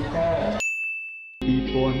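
Crowd chatter cuts off abruptly to a single bell-like ding that rings for under a second and fades, followed at once by a Khmer pop song with a man singing.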